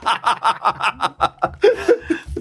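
Men laughing hard in quick repeated bursts.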